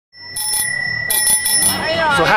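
Bicycle bell ringing: one strike, then a quick run of about four more strikes about a second in, its high ring held between them.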